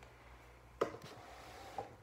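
Quiet room tone with a low hum, broken by one sharp knock a little under a second in and a softer tap near the end.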